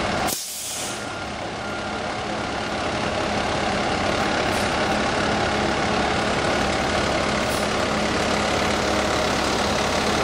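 Heavy emergency trucks' diesel engines idling, a steady low hum. Two short high beeps sound about a second in.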